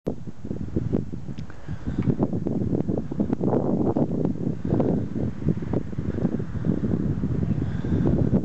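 Gusty wind buffeting the camera microphone through its windsock: a continuous low rumble broken by rapid, uneven flutters.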